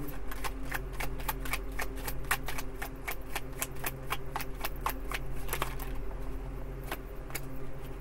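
A tarot deck being shuffled in the hands, the cards clicking and flicking against each other irregularly, several times a second, over a steady low hum.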